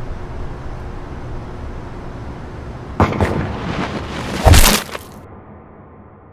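A low steady rumble, then a sharp crack about three seconds in, followed by a rising noisy rush and a loud, heavy boom about a second later. The boom is the loudest sound, and the sound then cuts off abruptly.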